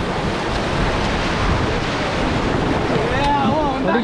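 Rushing white water of a river rapid churning around an inflatable raft, a steady loud wash of water noise with wind on the microphone. A voice calls out faintly near the end.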